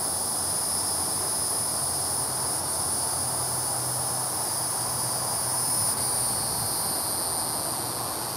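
Steady high-pitched chorus of insects in the surrounding trees, unbroken throughout, with a faint low hum beneath.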